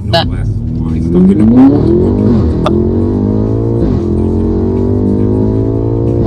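BMW M5's twin-turbo V8 pulling hard under acceleration, heard from inside the cabin: the engine note climbs steeply, drops at an upshift about two seconds in, climbs again, and drops at two more shifts, one a little before the middle and one at the end.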